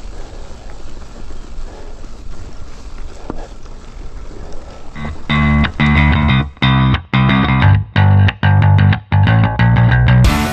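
Rolling noise of a mountain bike on a leaf-covered dirt trail for about five seconds, then loud distorted rock guitar music cuts in. The music comes in chords broken by several brief gaps.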